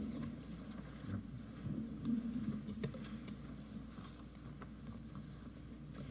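Quiet pause with room tone: a faint steady low hum, with a few light ticks and rustles about two to three and a half seconds in.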